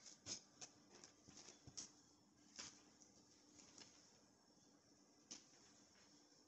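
Near silence with a scattering of faint, short clicks and light taps, irregularly spaced.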